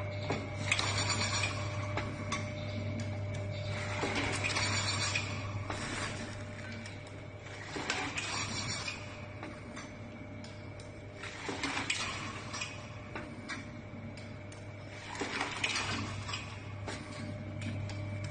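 VPM SJ1000 liquid pouch packing machine running, with a steady hum under a clattering, clinking burst about every four seconds as it cycles through its packing strokes.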